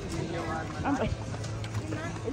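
A voice, talking or singing, with music underneath and a low steady hum.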